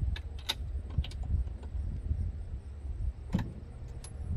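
Socket wrench loosening spark plugs on a jet ski engine: a few scattered metallic clicks and clinks, the sharpest about three and a half seconds in, over a low steady rumble.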